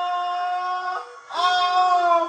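A woman's long, high excited scream, held on one pitch. It breaks off about a second in and starts again with a rising swoop.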